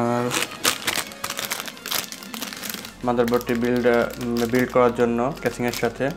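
Plastic packaging crinkling as it is handled, a dense run of sharp rustles from about half a second in to about three seconds in. A voice is heard over the second half.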